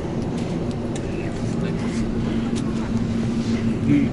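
Steady low rumble of a parked airliner's cabin during boarding, with a steady hum tone joining about a second in and a few faint clicks.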